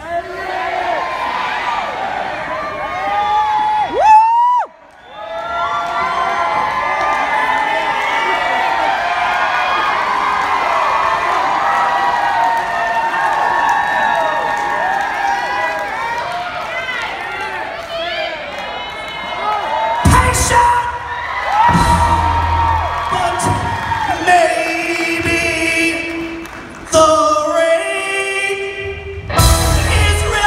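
A sung note rising and cut off about four seconds in, then a long stretch of audience cheering, whooping and shouting over the held pause. Low band hits come two-thirds of the way through, and singing with the live rock band starts again near the end.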